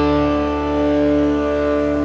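Live rock band's electric guitars holding a sustained chord that rings on as steady tones, the upper notes slowly fading.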